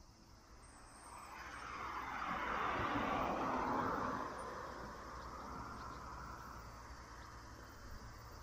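A car passing by on the road, its noise swelling to a peak about three to four seconds in and then fading away.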